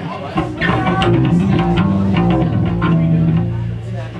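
Electric bass and electric guitar played loosely through amplifiers, not a full song: a few held low bass notes that change pitch two or three times, with picked guitar notes over them.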